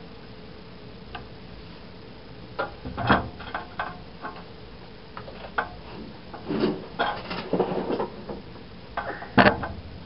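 Hands handling the opened plastic housing of a Dremel Multi-Max: an irregular string of clicks, knocks and rubbing sounds, with the loudest knocks about three seconds in and near the end.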